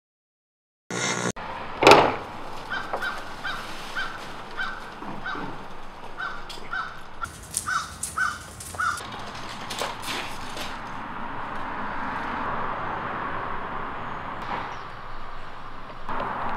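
A bird calling in a quick run of short, evenly repeated notes, about two or three a second, over outdoor ambience. It is preceded by a single sharp knock about two seconds in, and stops about halfway through, after which a steady background hiss slowly grows.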